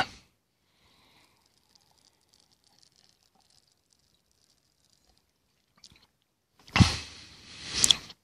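Near silence for most of the stretch, then about seven seconds in a person takes a sip of sangria from a glass and swallows, a sudden loud sound followed by a swelling noisy slurp.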